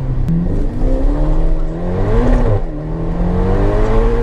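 Ferrari Portofino's twin-turbo V8 accelerating, heard from inside the cabin: the engine note climbs, drops at a gear change a little past halfway, then climbs again.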